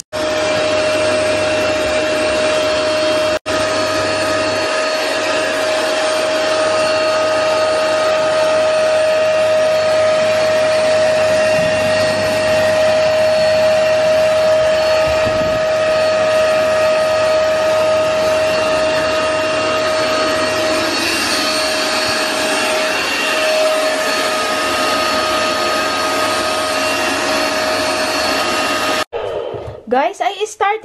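Vax carpet cleaner running with its hose hand tool on stair carpet: a steady motor-and-suction whine with one strong pitched hum. It breaks off briefly about three seconds in and stops just before the end.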